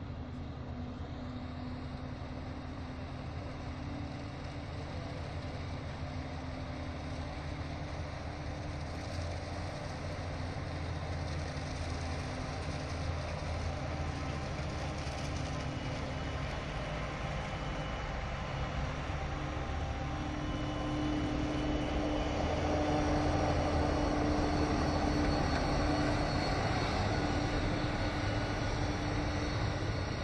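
Krone Big X 650 self-propelled forage harvester chopping maize, with a tractor and trailer running alongside it: a steady engine and chopper drone with a held whine, growing louder as the machines come closer and loudest about two-thirds of the way through.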